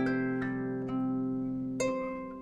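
Marini Made 28-string bass lap harp being played: single plucked notes ring on over sustained low bass notes, a new note about every half second, with a stronger pluck near the end.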